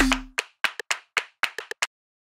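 Background music breaks off, and a quick, uneven run of about ten sharp hand claps follows as a sound effect in the soundtrack.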